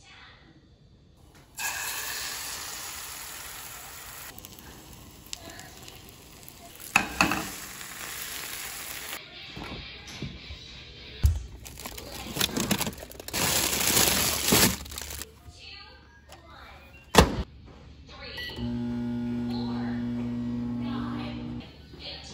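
Kitchen cooking sounds: food sizzling in a hot oiled frying pan, starting a second or two in and slowly dying down, with a few sharp clatters of utensils and dishes. Near the end comes a steady low humming tone for about three seconds.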